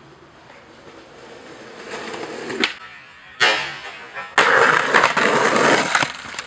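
Skateboard wheels rolling louder on asphalt as the skater approaches, then a sharp pop of the board's tail, a short silence while airborne over the stairs, and a hard impact as he comes down. About a second later comes a loud rushing noise lasting about a second and a half.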